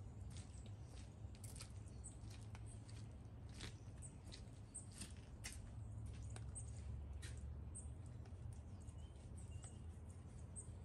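Faint, irregular small ticks and taps scattered through the whole stretch, over a low steady rumble.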